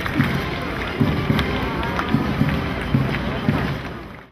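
Crowd of spectators cheering and calling out, with scattered claps and low thuds about twice a second beneath.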